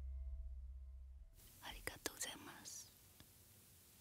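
The accompaniment's final low note fades away, and about a second and a half in the singer gives a brief, soft whisper close to the studio microphone. Only faint room tone follows.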